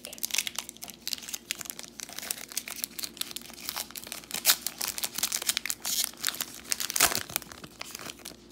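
Plastic wrapper of a Donruss Optic basketball card pack crinkling as it is torn open by hand and the cards are slid out: a dense run of sharp crackles and snaps.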